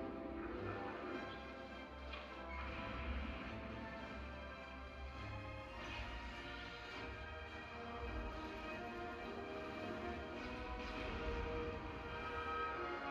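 Live symphony orchestra playing a film score, with held string and brass chords and a few brief swells, heard from the audience in a concert hall.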